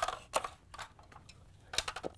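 Hard plastic parts of an ice dispenser auger assembly clicking and knocking as they are handled and turned over: a few sharp clicks near the start and a couple more near the end, with a quiet stretch between.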